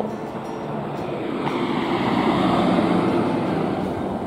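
A road vehicle passing on the street: its noise swells to a peak about two and a half seconds in and then fades away.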